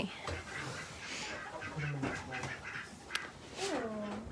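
Chickens clucking quietly, with a short call near the end and faint rustling of straw in a nest box.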